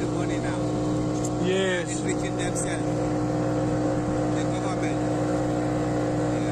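The motor of a wooden motorboat running steadily under way, holding one even pitch.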